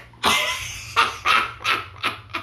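Loud barking: one long bark followed by three short, quick barks.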